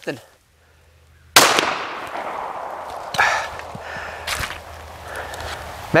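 A single pistol shot from a SIG P320 AXG Scorpion, sharp and sudden about a second and a half in, followed by a fading hiss with a few small knocks.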